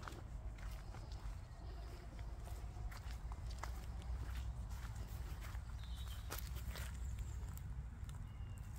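Footsteps of someone walking on a woodland path, irregular soft crunches and clicks, over a low steady rumble on the microphone.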